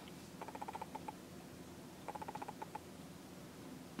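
Faint rapid ticking or chittering in two short runs of about a dozen ticks a second, over a faint steady hum.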